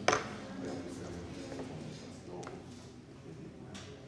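A sharp click at the very start, then a few quieter clicks of wires and test leads being handled and connected, with faint low mumbling underneath.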